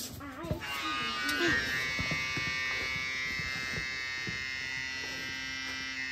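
Battery-powered electric pump running with a steady high whine, moving brake fluid through a trailer's hydraulic brake line into a catch bottle to purge air from the line. It starts at once and cuts off at the end.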